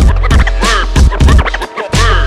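Hip hop DJ scratching on a turntable: quick back-and-forth pitch sweeps cut over a beat with deep bass and kick drum.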